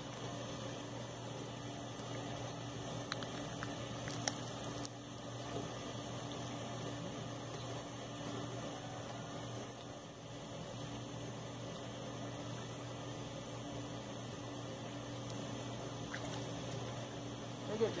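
A steady low hum under a constant background hiss, with a few faint clicks about three to five seconds in.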